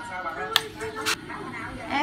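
A voice, low and brief, with two sharp clicks about half a second apart near the middle.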